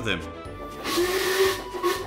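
Steam locomotive giving a hissing burst of steam with a low whistle tone under it, lasting about a second, over soft background music.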